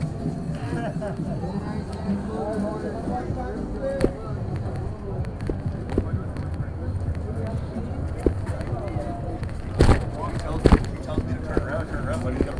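Busy city sidewalk ambience: a murmur of people talking, over a steady low rumble of traffic. Two loud, sharp knocks about a second apart near the end stand out above the rest.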